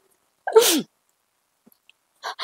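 A woman crying: one short sob, falling in pitch, about half a second in.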